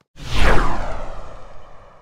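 A whoosh sound effect for an animated logo end card: a single swoosh that sweeps down in pitch over a low rumble, starting suddenly and fading away over about two seconds.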